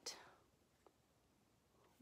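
Near silence: quiet room tone, with a soft hiss fading at the start and one faint tick a little before the middle.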